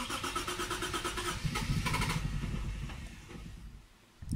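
Starter cranking a Lexus IS200's 1G-FE inline-six on a Speeduino ECU, in rapid even strokes. About halfway through, the engine sputters with heavier rumbling as it nearly catches, then fades out near the end without starting: a near-miss start with the trigger setting not yet right.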